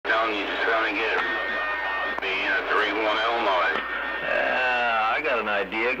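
A voice coming in over a CB radio and played through its speaker, the signal meter needle swinging up with the incoming transmission.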